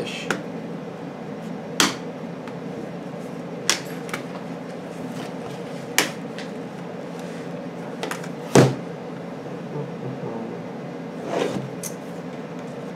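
Plastic snap clips of a laptop's palm rest popping and clicking as a small flat metal pry tool works along the case seam: several sharp clicks a second or two apart, the loudest about eight and a half seconds in. The clips are tight and slow to release.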